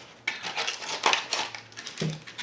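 Scissors snipping through a hard, dried papier-mâché shell of layered newspaper, giving a run of irregular sharp clicks and crackles.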